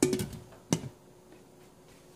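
Glass pot lid set down onto a stainless steel pot: a clatter with a short ring as it lands, then a second sharp clink a little under a second in as it settles on the rim.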